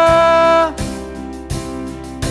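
Live worship band playing, with acoustic guitar, bass guitar, keyboard and singers. A long held chord stops about two thirds of a second in, and the music carries on more quietly with a couple of beats.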